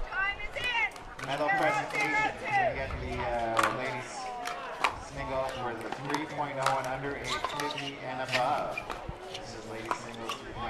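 Several sharp pops of pickleball paddles striking the plastic ball during a rally, with people talking over them.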